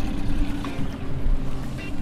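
Small outboard kicker motor running steadily, a constant low rumble with a steady hum, under wind noise and waves on the boat.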